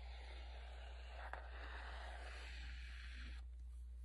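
Liquid glue squeezed from a soft plastic squeeze bottle in a line across a paper page: a faint, steady hiss that stops shortly before the end.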